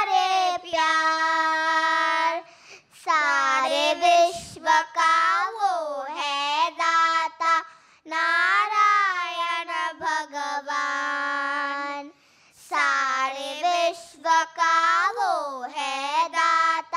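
Children singing a devotional bhajan, sustained sung phrases with held notes and gliding pitches, broken by short breaths about three, eight and twelve seconds in.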